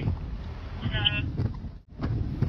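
Hurricane-force wind buffeting the microphone in a dense, gusty low rumble, with a short high-pitched tone about halfway through. The sound cuts out abruptly near the end.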